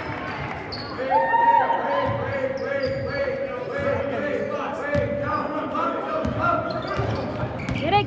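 Basketball bouncing on a hardwood gym floor during play, among scattered shouts and voices from players and spectators, echoing in the gymnasium.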